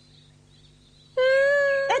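A cartoon monkey's vocal call: a single steady, held note that begins about halfway through and lasts under a second.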